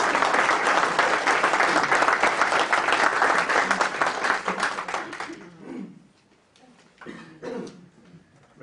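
Audience applauding, the clapping dying away about five and a half seconds in; a few quiet voices follow near the end.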